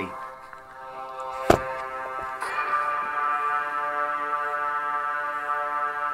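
Music with sustained held chords playing from a laptop's small built-in speakers, showing their lack of sound quality. The music swells louder about two and a half seconds in, and a single sharp click comes about a second and a half in.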